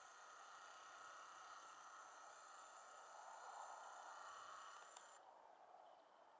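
Near silence: faint steady background hiss, with a faint high tone that drops away about five seconds in.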